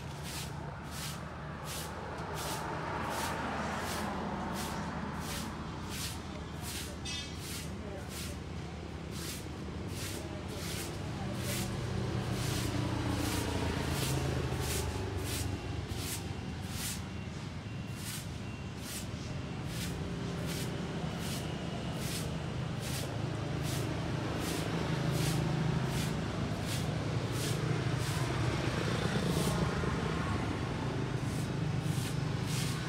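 A broom sweeping leaves and grit across paving tiles, steady regular strokes a little more than one a second, over the low steady rumble of passing road traffic.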